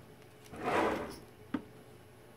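A short scraping rustle of about half a second, followed about a second and a half in by a single sharp click.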